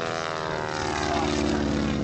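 Stearman biplane's radial engine and propeller running in flight, the note falling in pitch over the first second and then holding steady.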